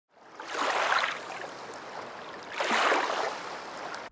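Rushing water noise, like waves washing in, swelling twice: once about a second in and again near three seconds.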